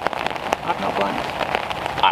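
Rain falling steadily, with many individual drops landing close by as sharp ticks.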